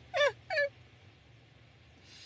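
A woman's brief laugh: two short, high-pitched syllables, each falling in pitch, in the first half-second or so.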